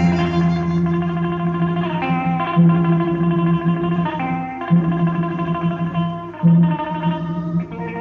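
Instrumental music: held melodic notes that change every second or two over a sustained low note, with echo effects.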